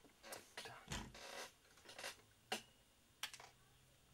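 A string of faint clicks and taps from small objects handled on a workbench as a tube of superglue is picked up, with a soft thump and a longer rustle about a second in.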